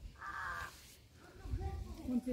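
A single harsh bird call, about half a second long, near the start, after which the sound drops.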